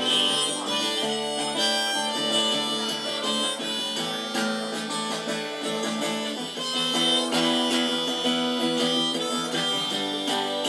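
Harmonica solo over strummed acoustic guitar, the harmonica played from a neck rack by the guitarist, in a folk-rock song.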